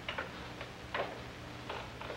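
Quiet room tone with a low steady hum and about four faint, irregular clicks; no banjo is playing.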